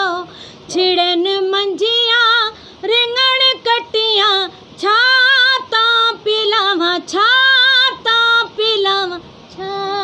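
A woman singing unaccompanied into a microphone: held, wavering phrases with short breaks for breath between them.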